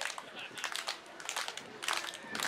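Scattered voices and calls from a small outdoor crowd around a wrestling ring, with a few light clicks and knocks.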